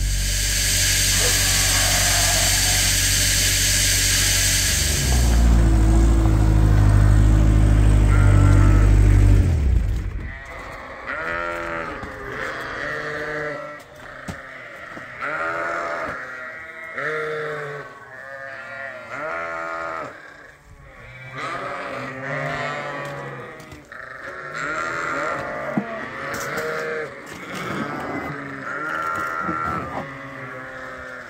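A flock of sheep bleating over and over at feeding time, many overlapping calls. Before the bleating, a machine runs with a steady low hum and a hiss for about ten seconds, then cuts off.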